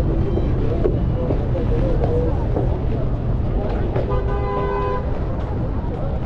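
City street traffic rumbling, with a vehicle horn sounding once for about a second, about four seconds in. Voices of passers-by are mixed in.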